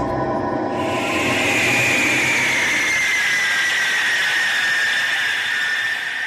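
MiG-31 jet engines whining and hissing as the interceptor taxis, starting about a second in. One high whine falls slowly in pitch.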